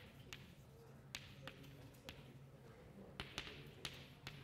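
Chalk on a blackboard: a few sharp, faint ticks and light scratches as words are written, over a steady low room hum.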